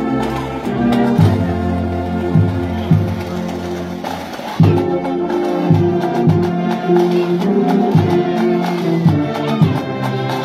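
A marching brass band of tubas, euphoniums and other brass playing a hymn in full chords, with held notes over a moving tuba bass line.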